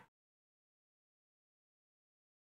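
Complete silence: the sound track is blank.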